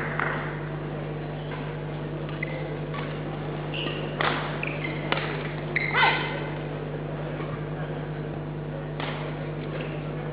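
Badminton rally: rackets hitting the shuttlecock in sharp knocks, with short squeaks of court shoes, the loudest hit about six seconds in as the point ends. A steady low hum of the hall runs underneath.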